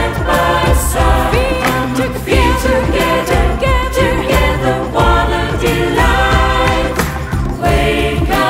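Mixed SATB choir singing in several parts.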